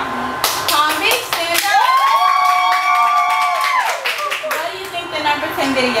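Hand clapping, with a high, drawn-out cheer held for about two seconds in the middle, then talking near the end.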